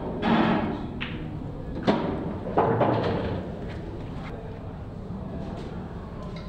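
Pool balls on a pool table: one sharp click of ball on ball about two seconds in, among a few softer knocks.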